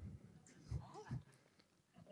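Near silence: room tone, with a faint, brief voice sound that bends in pitch about a second in.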